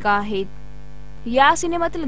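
Steady electrical mains hum and buzz under a woman's voice. It is heard on its own in a short pause between her phrases, then her voice comes back.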